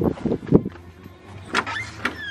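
Hurried footsteps and thumps of a handheld camera while walking quickly, several in the first second.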